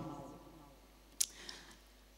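A pause in a woman's speech into a handheld microphone: the end of her last word fades away, then a single sharp click about a second in, followed by a fainter tick.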